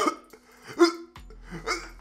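A man coughing and gagging into his hand, with one strong throaty, hiccup-like cough about a second in and a couple of weaker ones near the end.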